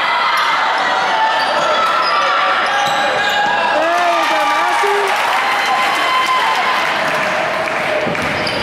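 Basketball game sounds in a school gymnasium: spectators' chatter and players' voices echoing in the hall, with a few raised shouts about four seconds in and a basketball bouncing on the hardwood floor.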